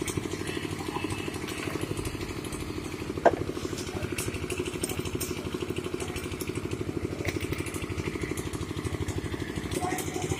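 A small engine running steadily at idle, with a rapid, even throb. There is a single sharp click about three seconds in.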